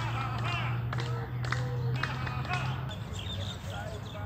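Outdoor ambience: repeated short, falling calls and a few sharp clicks over a low steady hum that stops about three seconds in.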